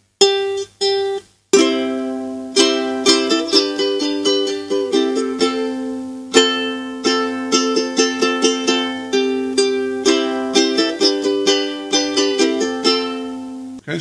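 Ukulele: two single plucked notes about a second in, leading back into the C chord, then steady strummed chords, including D minor.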